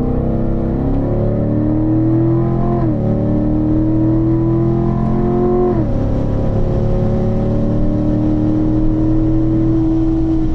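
Corvette V8 heard from inside the car, pulling under full throttle with a rising pitch. It makes two quick upshifts, about three and six seconds in (third to fourth, then fourth to fifth), and then climbs slowly in fifth gear.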